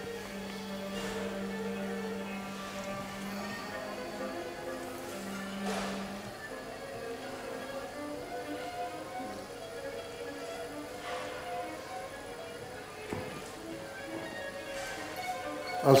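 Solo viola playing a caprice from the loudspeakers: a long held low note, another held note a few seconds later, then a moving line of shorter notes.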